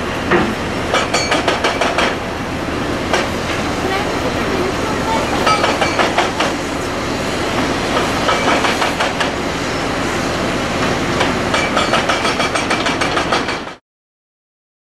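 Hydraulic excavators demolishing a concrete dam: diesel engines running steadily under repeated clusters of clanking and scraping as steel buckets work through concrete rubble and rebar. The sound cuts off suddenly near the end.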